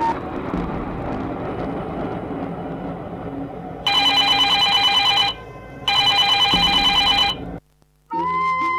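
Telephone ring sound effect from the mime's soundtrack: two trilling rings, each about a second and a half long with a short gap between them, starting about four seconds in after a low rushing noise. It cuts off abruptly.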